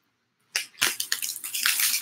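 Foil wrapper of a baseball card pack crinkling and rustling as it is handled, starting about half a second in.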